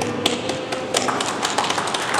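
A small group of people clapping their hands, the claps growing dense about a second in.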